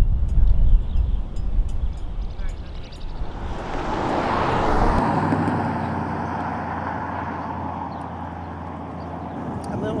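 Wind buffeting the microphone, then a vehicle passing on the road: its tyre noise swells about four seconds in and slowly fades.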